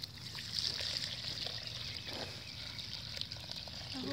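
Dark fermented liquid fertilizer poured from a bucket onto dry homemade biochar in a second bucket: a steady trickling pour.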